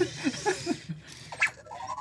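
A man's soft laughter trailing off in a few short breathy pulses, then a brief rising chirp-like tone near the end.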